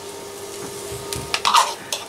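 Beaten egg poured from a plastic cup into a frying pan of cauliflower, over a faint steady hum, with a few light clicks and knocks of kitchenware in the second half.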